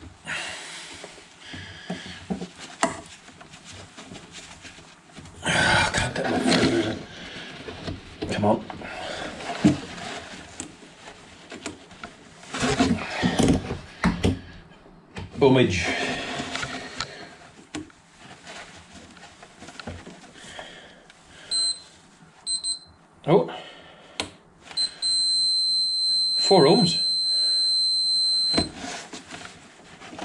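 Multimeter continuity buzzer beeping as its probes touch the terminals of a compression driver: a few short beeps about two-thirds of the way in, then one steady high beep lasting nearly four seconds near the end, the meter's signal of a closed circuit through the driver's voice coil. Rustling and knocks of gloved hands handling the wires and probes come before it.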